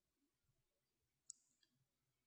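Near silence with faint room tone and one brief, faint click a little past halfway.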